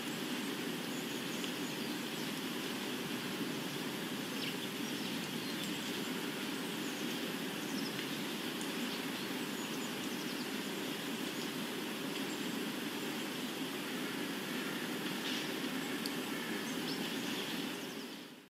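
Steady ambient soundscape of an even rushing noise with faint bird chirps scattered through it, fading out at the end.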